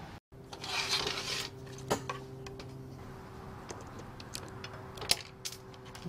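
Small steel screws and metal parts clicking against a stainless steel table top as an instrument case is unscrewed: a short rustle about a second in, then a few scattered sharp clicks over a faint steady low hum.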